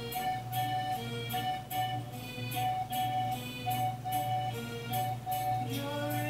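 A red piano accordion playing an instrumental introduction: a melody of held notes over a steady chord rhythm pulsing about two to three times a second.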